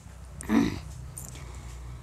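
A pause between phrases of unaccompanied female singing: a low steady hum, broken by one short cry about half a second in.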